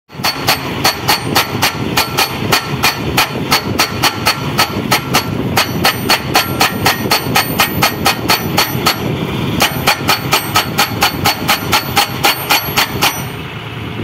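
A tractor-mounted hydraulic post-driving hammer pounds a steel crash-barrier post into the ground in rapid, even blows, about three to four a second, over the running tractor engine. The blows pause briefly about nine seconds in and stop shortly before the end.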